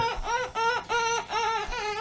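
A young child's high-pitched voice making a string of short, sing-song play noises, about five in two seconds.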